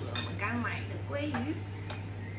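Dishes and cutlery clinking, with a sharp clink near the start and another near the end, over a steady low hum.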